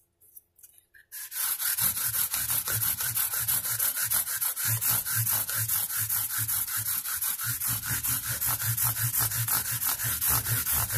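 A 220-grit abrasive pad on a fret leveling and crowning block rubbed in quick back-and-forth strokes along a guitar's metal frets, starting about a second in. It is the finer sanding stage after 180 grit, leveling, crowning and polishing the frets at once.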